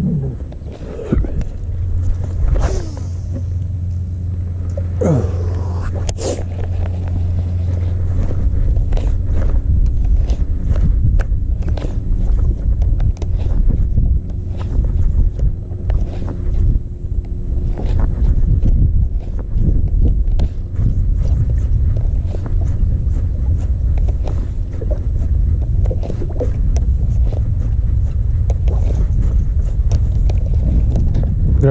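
Wind on the microphone, heard as a steady low rumble, with many light clicks from a baitcasting reel and rod being worked. Two swishes come in the first few seconds, and a faint steady hum runs through the middle stretch.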